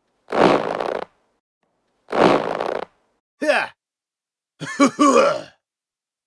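A seal barking twice, two matching barks about two seconds apart. They are followed by short cartoon sound effects with sliding pitch: a quick falling tone, then a brief warbling cluster near the end.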